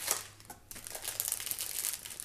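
Clear cellophane candy packaging crinkling irregularly as it is handled, with a short lull about half a second in.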